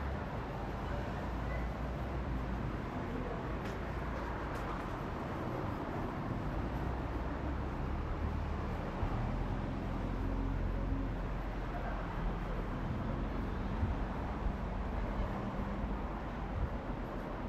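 City street ambience: a steady low rumble of road traffic passing nearby.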